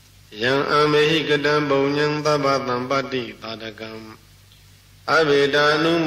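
A Buddhist monk chanting Pali verses in Burmese recitation style, in a male voice held on a few steady notes. The chant breaks off for about a second near the end, then resumes.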